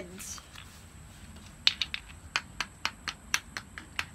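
Chunky plastic toy building blocks clicking and knocking against each other and the tile floor: an uneven run of about a dozen short, light clicks starting about a second and a half in.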